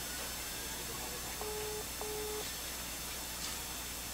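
Telephone ringback tone through a smartphone's loudspeaker while an outgoing call waits to be answered: one double ring, two short beeps of a single steady tone in quick succession, about halfway through.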